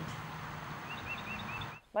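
Open-air background hiss with a small bird chirping a quick run of five short high notes about a second in; the sound cuts off suddenly near the end.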